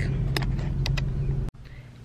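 Steady low hum of a car running, heard from inside the cabin, with a few light clicks. It cuts off abruptly about a second and a half in, leaving quieter room tone.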